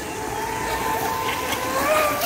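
Radio-controlled model speedboat's motor running flat out with a steady high tone that rises in pitch and grows louder as the boat speeds past close by near the end.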